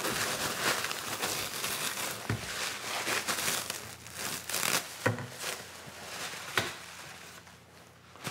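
Clear plastic stretch wrap being pulled and crinkled off a cardboard shipping tube: a dense crackling rustle, with a few knocks along the way. It dies down over the last couple of seconds.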